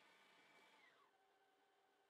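Near silence, with a very faint steady tone that drops in pitch about a second in.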